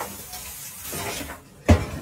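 A hiss, then one heavy thud near the end as an air-conditioner outdoor unit drops onto the ground.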